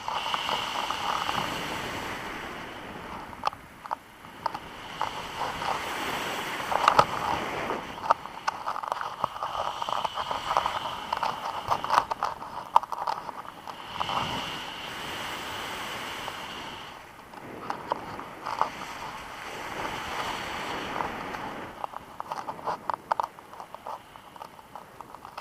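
Wind rushing over a camera microphone in flight under a paraglider, swelling and easing every few seconds, with a rapid crackle of buffeting on the mic.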